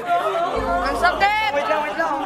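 Chatter: several voices talking over one another, with a low steady hum underneath from about half a second in.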